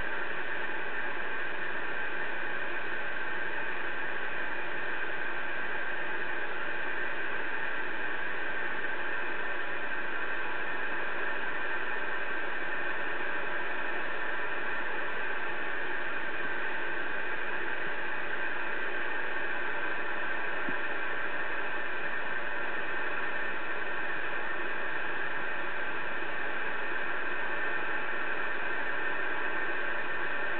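Connex CX-3400HP CB radio receiving steady static hiss through its speaker with no station coming through, an even, unchanging rush of noise.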